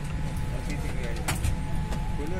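Steady low hum of an airliner cabin with a faint steady whine over it, low voices of nearby passengers, and a single sharp knock just over a second in.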